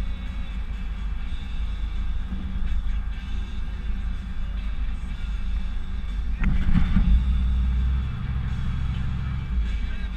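Cab-interior drone of a Ford pickup's 460 big-block V8 and its road noise while driving, a steady low rumble. A louder rush comes about six and a half seconds in.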